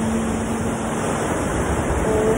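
Ocean surf breaking on a beach, with a woman's voice holding one low chanted note of the mantra that stops a little past halfway.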